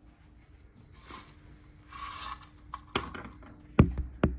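Hotel-room curtains being drawn open on their track: soft fabric swishes about a second in and again around two seconds, then a few sharp clicks of the runners near the end, over a faint steady hum.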